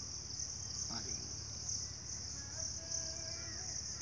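Insects singing in a steady high-pitched chorus that holds without a break.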